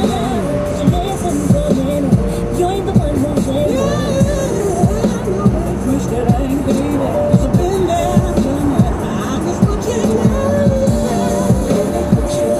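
Music with a singing voice playing on a car radio, heard inside the car's cabin.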